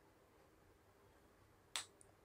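Near silence, then near the end a single short, sharp lip smack as freshly lipsticked lips are pressed together and parted.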